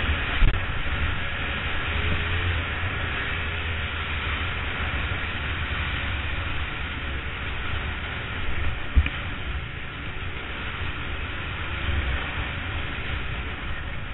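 Dirt bike engine running while riding down a rutted dirt trail, under a steady rush of wind noise, with a sharp thump about nine seconds in.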